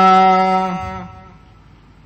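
A man's voice chanting a line of Sikh Gurbani (the Hukamnama) in a sung recitation holds its final note steadily, with a slight waver, then fades out about a second in.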